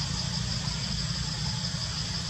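Steady outdoor background noise: a low rumble underneath and a constant high-pitched hiss, with no distinct events.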